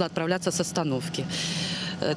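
A woman speaking in Russian, then a short hiss near the end, over a steady low hum.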